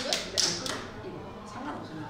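Background voices talking, with a few short, sharp taps or hissy strokes in the first second.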